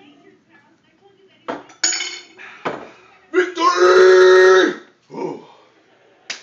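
Glass clinks and knocks, then a man's long, loud yell held on one pitch for about a second and a half.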